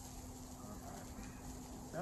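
Faint steady background hum and hiss with no distinct knocks, and a voice starting just at the end.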